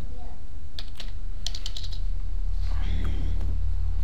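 Computer keyboard keys clicking: a couple of single keystrokes, then a quick run of about five, then a few fainter ones, over a steady low hum on the recording.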